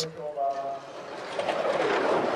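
Skeleton sled's steel runners scraping along the ice, getting louder from about a second in as the sled comes down toward a trackside microphone.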